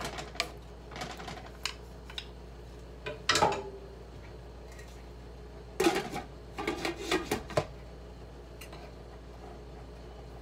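Wooden spatula and spoon knocking and scraping against a metal cooking pot as chicken pieces are stirred, then a burst of clinks and clatters about six seconds in as a glass lid is set onto the pot.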